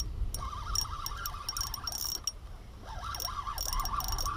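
Spinning reel being cranked in short spells, reeling in line with the rod bent under load: the reel's gears whirr with rapid clicking, with a brief pause partway through.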